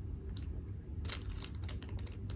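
Faint, irregular small clicks and taps as a leather handbag fitting is fiddled with by hand while being worked out how to attach. A few sharper ticks fall in the second half.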